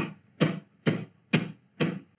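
Five hand claps, evenly spaced a little under half a second apart, clapping out the beat of a 120 BPM song.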